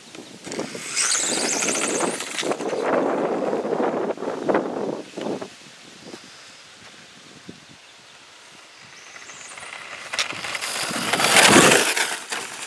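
Electric RC pro mod drag car with a Velineon 3500kV brushless motor running fast on pavement: high motor whine and tyre noise, loud for the first few seconds, dropping away in the middle, then building again to a loud rush near the end.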